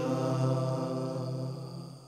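Voices holding the final note of a slow devotional chant on 'misericórdia', steady at first and then fading out near the end.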